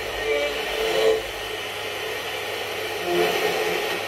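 Toshiba RT-8700S boombox radio hissing with static between stations as its tuning dial is turned, with brief faint snatches of broadcast sound breaking through twice.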